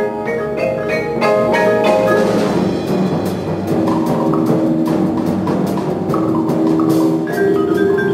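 Indoor percussion ensemble playing: rows of marimbas and vibraphones striking quick ringing mallet notes over drums and other percussion. A short rushing swell comes about two to three seconds in, and held notes ring near the end.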